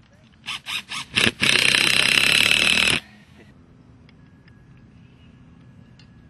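A handheld power tool worked in four short trigger blips, then run for about a second and a half before stopping sharply.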